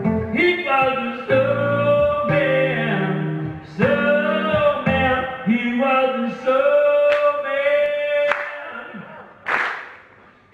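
Live solo performance: a male voice singing long held notes over instrumental accompaniment. The music stops about eight seconds in, and a short burst of noise follows near the end.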